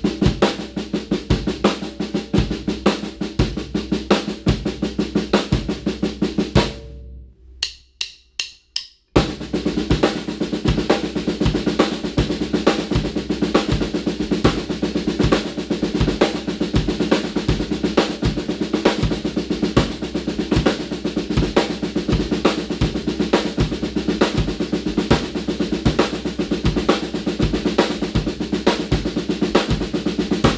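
Drum kit playing a seven-note sticking grouping in fast triplets on the snare drum over a steady half-note bass drum pulse. About seven seconds in the playing stops for about two seconds, with four light evenly spaced clicks, then the pattern starts again.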